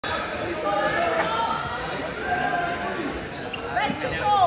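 Several spectators' voices talking over one another in a large, echoing gym, with a few dull thuds among them.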